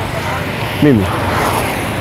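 Roadside street noise: a steady wash of passing traffic with voices in the background, and one short sound sliding down in pitch about a second in.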